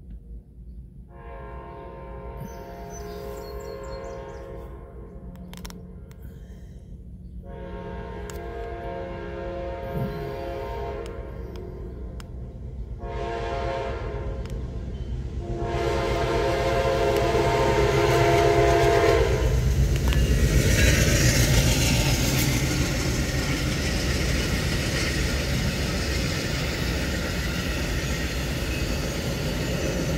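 Amtrak passenger train's locomotive horn sounding the grade-crossing signal: two long blasts, a short one and a final long one as the train approaches. The rumble and wheel noise of the train passing close by swell up under the last blast and carry on after it ends.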